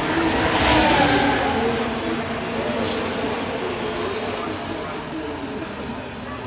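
A Formula 1 car's turbocharged V6 engine passing close by out of the final turn, loudest about a second in with its pitch dropping as it goes past, then fading away.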